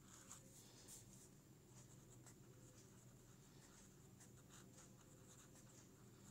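Faint scratching of a pen tip on paper as cursive words are written: short irregular strokes with small pauses between them.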